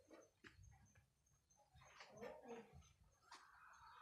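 Near silence: faint outdoor background with a few soft clicks and a faint, brief pitched sound about two seconds in.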